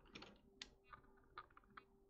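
Faint keystrokes on a computer keyboard, about five separate taps, over a faint steady hum.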